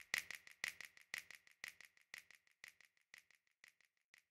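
Faint ticking, rattling percussion from the tail of a hip-hop beat, about four strokes a second, dying away.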